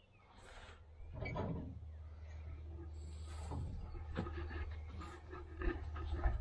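Handling and movement noise: rustling and light knocks over a steady low rumble that starts about a second in.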